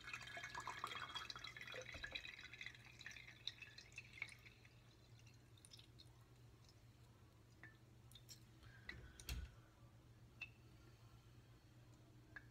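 Water poured from a plastic bottle over a plastic citrus juicer's reamer, trickling and dripping into the glass jar below for about four seconds before it stops. Afterwards a few faint clicks and a soft knock.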